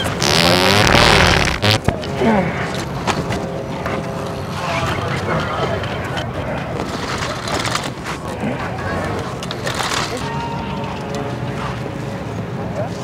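A loud wet fart sound, one long blast of about a second and a half that cuts off suddenly, then the voices of people talking over background music.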